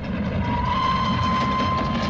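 Train sound effect: a low rolling rumble of a train running, with a single steady whistle tone that comes in about half a second in and holds.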